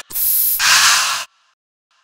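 Aerosol deodorant can spraying: one sharp hiss about a second long that grows fuller about halfway through, then cuts off suddenly.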